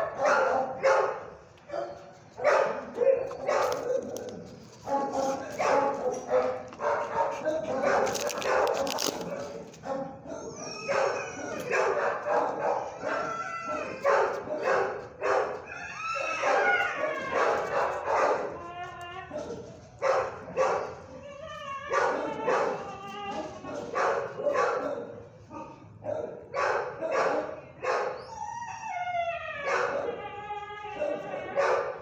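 Dogs barking over and over, many barks overlapping, with higher pitched yips and howl-like calls mixed in from about ten seconds in and again near the end.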